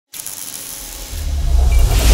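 Cinematic intro sound effect for an animated logo: a hiss that starts suddenly, with a deep rumble swelling under it from about a second in and growing louder toward the end.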